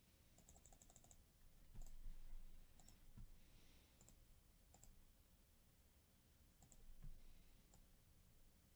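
Faint clicks from working at a computer over near-silent room tone: a quick run of several clicks about half a second in, then single clicks every second or so.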